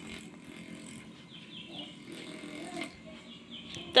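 Handheld electric massager running, a steady low hum as it is held against a forearm.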